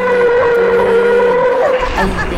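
Tyres squealing in one loud, steady, high-pitched skid, held for most of two seconds and breaking off near the end.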